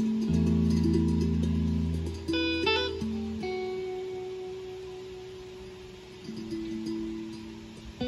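Guitar playing: plucked notes and chords left to ring and slowly fade, with a quick flurry of notes about two and a half seconds in, and fresh notes picked up again near the end.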